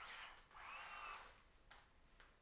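Faint whir of a powered prosthetic hand's motor, in a short burst at the start and then a longer run of about a second from half a second in, as the hand works its grip on an orange.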